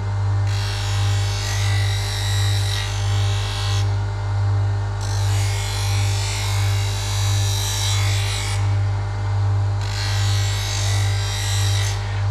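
Electric bench grinder running with a steady motor hum that swells and fades a little faster than once a second. A knife blade is drawn lightly across the spinning wheel in three passes of a few seconds each, each a dry grinding hiss, with short breaks between them.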